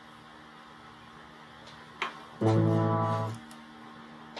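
Electric guitar: a single chord strummed about two and a half seconds in, ringing for about a second before fading, with a short click from the strings just before it. A faint steady hum sits underneath.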